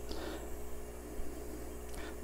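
Quiet steady low hum with a faint hiss: room tone.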